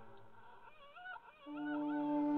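Fox whimpering: a high, wavering whine lasting under a second, about halfway through, as the background music fades out and before it comes back in.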